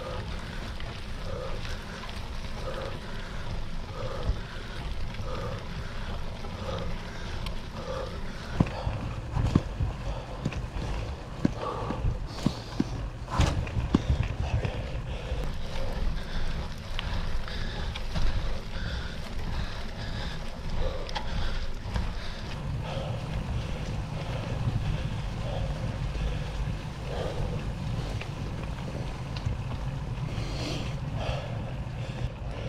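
A cyclist breathing hard in a steady, repeating rhythm while straining up a very steep paved climb on a heavily loaded bike, over low wind and tyre rumble on a handlebar-mounted camera. A few sharp clicks and knocks come in the middle.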